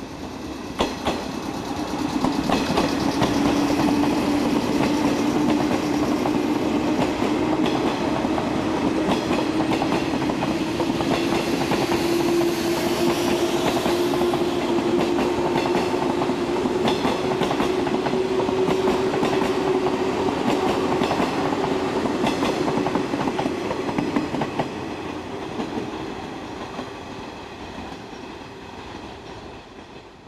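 JNR 113 series electric train passing close by. Its motor whine rises slowly in pitch as it gathers speed, over a steady rumble and the clack of wheels over rail joints. The sound fades away near the end.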